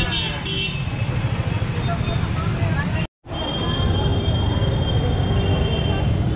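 Busy street ambience: a steady low rumble with scattered crowd voices and motorbike traffic. The sound cuts out briefly about three seconds in, then resumes.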